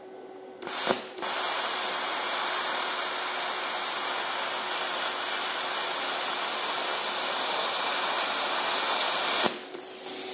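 PowerPlasma 50 plasma cutter at its full 50 amps cutting through half-inch aluminium plate. A short burst about half a second in, then a loud, steady hiss of the arc and air jet for about eight seconds, which cuts off near the end.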